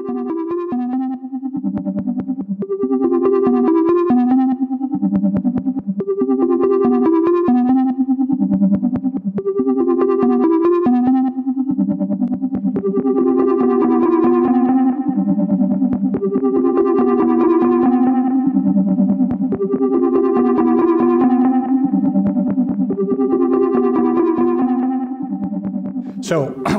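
A Korg minilogue synthesizer plays a repeating sequence through a Chase Bliss Thermae analog delay pedal, with echoing repeats trailing each note. The phrase loops about every two and a half seconds, and the echoes thicken partway through as the pedal's knobs are turned.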